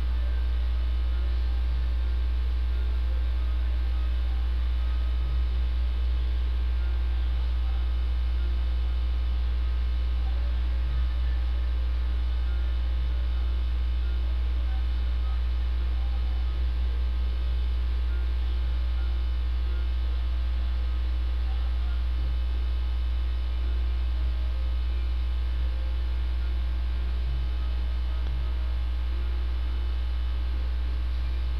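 A steady, unbroken low electrical hum, with a faint hiss above it.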